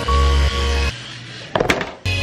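Background music with a strong repeating bass and sustained melody notes that drops out about a second in, followed near the end by a short clatter of sharp knocks.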